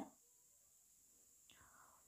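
Near silence, with one faint, brief breathy sound about one and a half seconds in.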